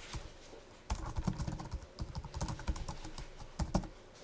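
Typing on a computer keyboard: a quick, irregular run of key clicks starting about a second in.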